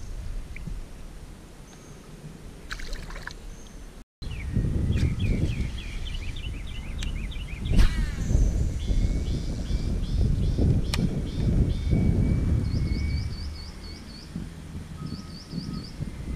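Songbirds chirping in quick runs of short repeated calls, over wind buffeting the microphone. There is a sharp click about halfway through.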